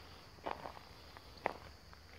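Footsteps on dry, stony ground: a few faint steps, the sharpest about one and a half seconds in.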